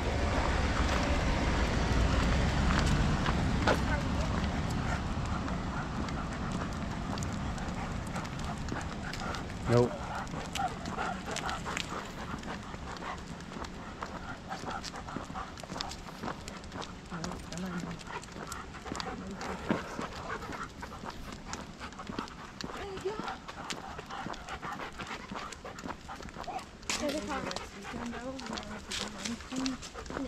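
Footsteps crunching on a gravel road as people walk leashed dogs, the dogs' steps and panting mixed in. A low rumble at the start fades away over the first few seconds.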